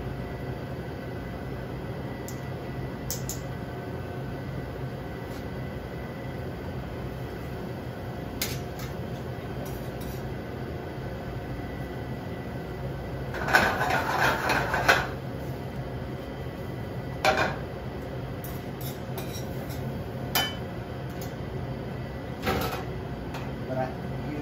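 Metal kitchen utensils and a steel sauté pan clattering: a burst of clanks lasting about a second and a half midway through, then a few single knocks, over a steady low hum.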